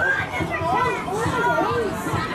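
Several voices shouting and calling out over one another, some of them high-pitched.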